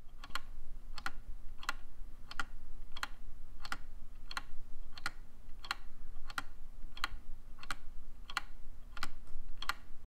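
Wooden gear wall clock ticking: its escapement gives an even, sharp wooden tick about every two-thirds of a second.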